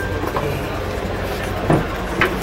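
A steady low mechanical drone over a noisy rumble, with a brief knock near the end.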